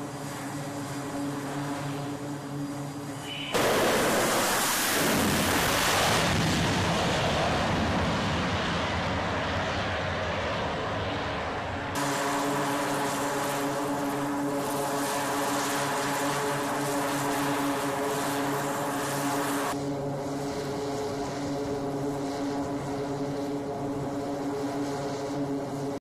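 A C-2A Greyhound's twin turboprop engines running with a steady, multi-tone propeller drone. About three and a half seconds in, a much louder rushing noise cuts in abruptly for about eight seconds, and then the steady engine tones come back.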